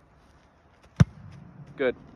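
One sharp, loud thump of a foot striking a football on a kick, about a second in.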